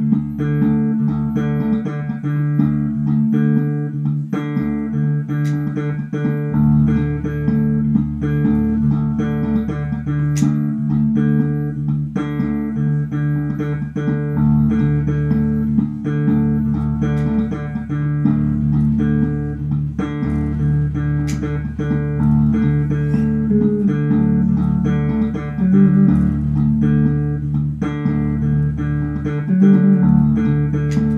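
Electric bass guitar played through a looper pedal: a recorded bass phrase repeats as a loop about every two seconds while further notes are layered over it. A deeper low part joins about six seconds in.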